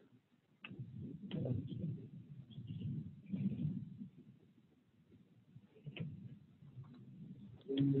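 Muffled, indistinct low sounds with a few clicks over a video-call audio line with an audio fault. Clear speech comes in near the end.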